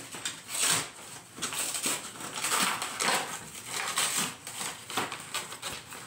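Cardboard shipping mailer being opened by hand, with repeated irregular tearing, scraping and rustling of cardboard.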